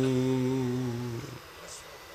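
A man's chanting voice holding one long, steady note at the end of an Arabic recitation phrase; it fades and stops a little over a second in, leaving quiet hall tone with a faint click.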